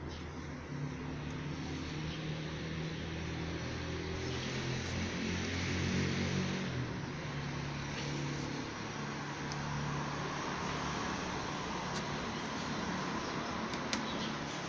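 A motor vehicle engine running nearby: a steady low drone that swells around six seconds in. A few faint clicks of the screwdriver working at the door's window trim strip sound over it.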